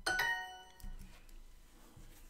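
Language-learning app's correct-answer chime: a short, bright ding that rings out and fades over about half a second, signalling that the answer was right. A single click follows just under a second in.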